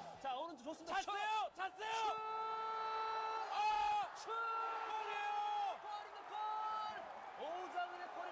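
Korean TV football commentator's voice raised in excited, drawn-out shouts, several long held calls in a row, over faint stadium crowd noise.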